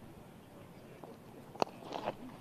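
Cricket bat striking the ball once: a single sharp crack about one and a half seconds in, from a cleanly timed stroke.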